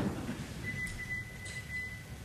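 Quiet room tone in a hall, with a thin, steady high tone that comes in about half a second in and holds, and a few faint ticks.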